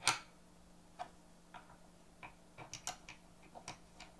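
Small metal clicks and taps of snap-setting dies and a fastener part being seated on the anvil and in the ram of a hand press. The sharpest click comes right at the start, then irregular light clicks follow, several in quick succession about three seconds in.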